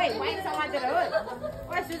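Speech: a woman talking, with other voices chattering.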